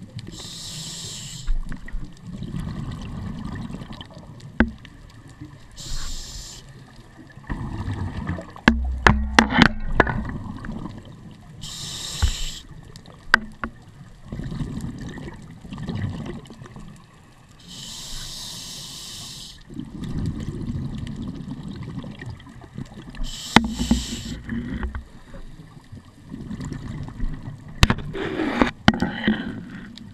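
Scuba diver breathing through a regulator underwater: a rush of exhaled bubbles every five or six seconds, with a low rumble of inhaling between, and a few sharp clicks and knocks.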